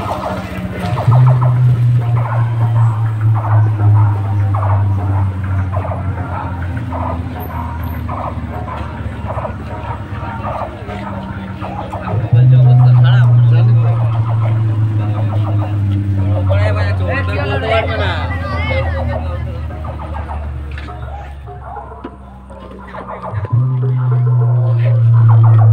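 Music over a loud sound system, dominated by a heavy, sustained bass that drops out and changes pitch about halfway through, with people's voices over it.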